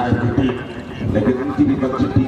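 A man talking without pause: live match commentary.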